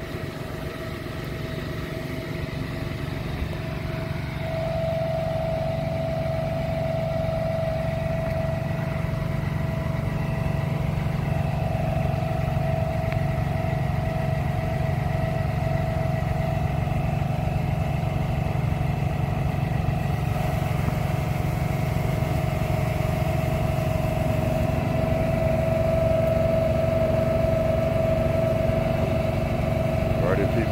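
Small engine driving a hose spray rig's pump, running steadily with a constant whine over a low hum. It grows louder over the first few seconds, then holds steady.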